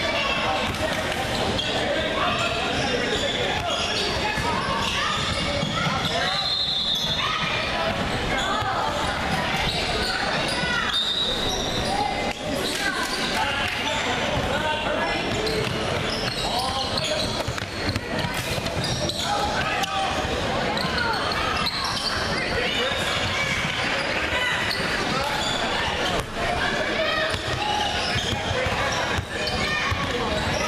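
Indoor youth basketball game: a basketball bouncing on the hardwood court amid steady spectator and player voices, shouting and chatter echoing in the large gym. A few short high-pitched squeaks cut through, typical of sneakers on the court.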